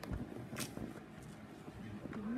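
Bedding and clothes rustling and bumping as a person shifts their weight on a bed, with a brief swish about half a second in.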